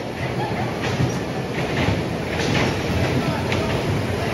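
Electric bumper cars running around a concrete rink, a steady low rumble of their motors and wheels.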